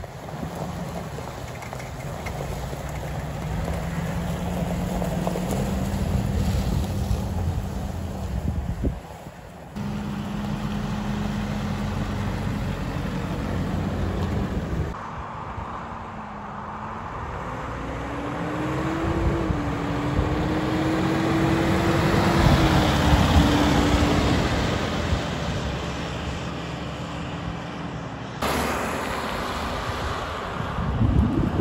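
Nissan Navara 2.5 dCi pickup's four-cylinder turbodiesel engine running in several cut-together takes, its pitch climbing as it pulls away and accelerates. The loudest stretch comes in the middle of the last take, as the pickup drives along the road, with wind on the microphone.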